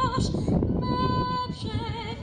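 A woman singing, holding long notes with a wide vibrato.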